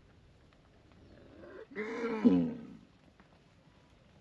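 A cow mooing once, about a second in: one long, low call that drops in pitch near its end.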